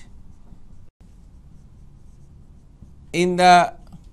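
A marker writing on a whiteboard, faint, over a low steady hum. A man speaks briefly near the end.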